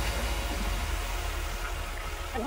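High-pressure washer spraying water onto a car's wheel and body: a steady hiss of spray over a low rumble.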